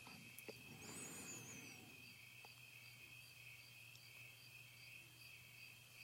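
Near silence: a faint, steady high-pitched insect chorus over a low hum, with a brief high twittering chirp about a second in.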